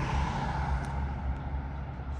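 Street ambience: a steady low hum of distant road traffic.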